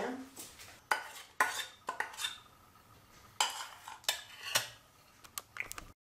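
A stainless steel saucepan being handled over a plastic mixing bowl, knocking and clinking against metal several times in separate sharp strikes with a short ring.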